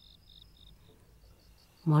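Faint crickets chirping: a quick, even run of short, high chirps, about five a second.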